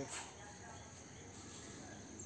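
Quiet outdoor background: a voice trailing off right at the start, then faint distant voices over a steady thin high-pitched drone.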